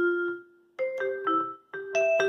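Yamaha PSS-A50 mini keyboard playing its vibraphone voice as a slow single-note melody. A ringing note dies away over the first half-second, there is a short gap, and then a few more notes follow.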